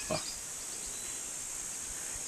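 Steady, high-pitched chorus of insects buzzing in the surrounding vegetation.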